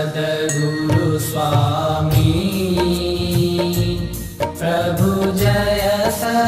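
Hindu devotional aarti music: voices chanting over instrumental accompaniment, with repeated sharp strikes and a low, pulsing beat underneath. The sound dips briefly about four and a half seconds in.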